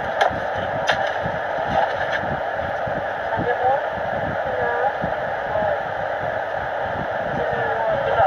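Steady rushing noise inside a car cabin, heard through a phone's microphone, with faint, indistinct voices in the background.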